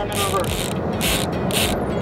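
Fishing reel being cranked, its gears giving short rasping whirs a little under twice a second as line is wound in against a snag.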